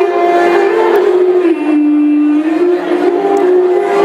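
Live Epirote folk music: a clarinet carries a slow melody in long held notes over the band, dropping to a lower note about a second and a half in and climbing back near the end.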